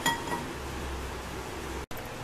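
Kitchenware clinking once at the start, with a short ring, as the soup is being dished up; then only low, steady room noise.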